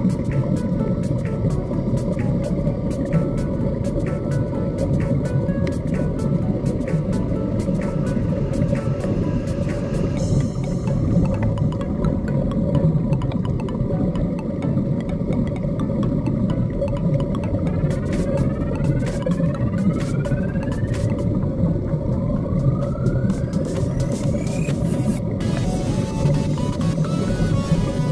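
Underwater sound: a steady low rumble and hum of a motor, with many scattered sharp clicks throughout and a few rising whines in the last third.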